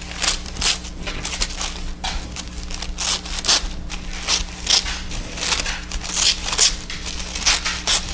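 Scissors cutting through a sheet of tissue paper in a series of short, crisp snips, about two to three a second, done slowly because the paper is delicate. A steady low hum runs underneath.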